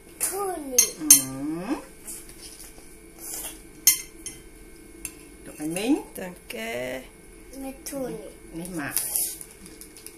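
A knife clinking and scraping against a plate as cake is cut, with a few sharp clinks, the loudest about a second in and again near four seconds. Voices come and go around it, gliding up and down in pitch.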